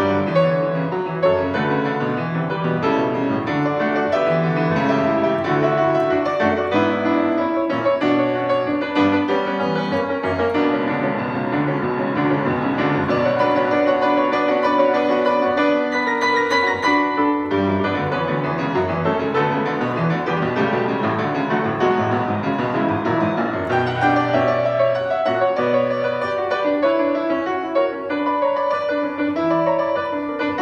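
A solo grand piano playing a flowing piece with full chords and running notes, at an even loudness.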